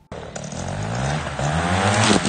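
Backpack paramotor engine and propeller running up under throttle, the pitch climbing steadily and growing louder.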